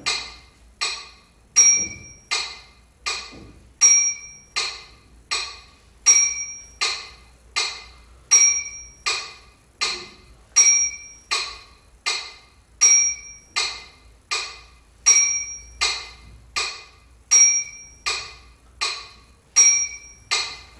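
Metronome ticking steadily at about four clicks every three seconds in three-beat bars, every third click higher and accented.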